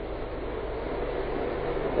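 Steady background hiss with a low hum, the recording's noise floor with no speech.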